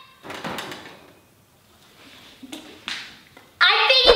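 A short rustling swish and a couple of light knocks. About three and a half seconds in, a child starts singing loudly.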